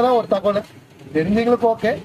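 A man's voice speaking, in two short stretches with a brief pause between.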